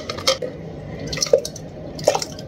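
Hot, thick homemade ketchup poured through a plastic funnel into a glass jar: soft pouring and dripping, with a few light clicks.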